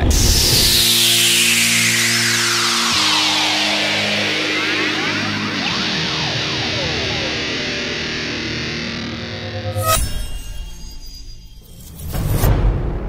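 Channel intro music: held electric-guitar-like chords under a long falling whoosh. About ten seconds in comes a sharp hit with a ringing tail.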